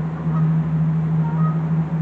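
Steady low hum of an idling engine, even and unbroken.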